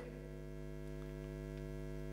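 Steady electrical mains hum: one low hum with a stack of evenly spaced overtones, unchanging throughout.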